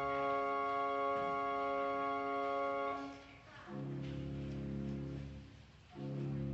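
Church organ playing a prelude in slow, held chords. A long steady chord gives way a little after halfway to a lower, fuller chord, which fades out near the end.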